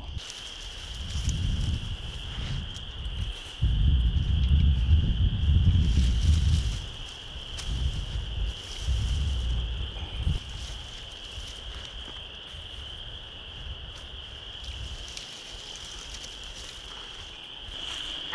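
Steady high-pitched chorus of calling insects. Gusts of low wind rumble on the microphone come and go through the first half.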